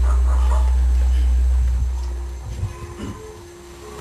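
A loud, deep steady hum that fades out about two seconds in, leaving a quieter stretch with a few low knocks and a faint steady tone.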